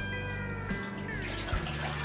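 Milk pouring from a measuring cup into a mixing bowl, a soft splashing that grows near the end, over steady background music.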